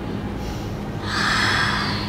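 A person's breath, a single breathy exhale lasting about a second, starting halfway through, over a low steady hum.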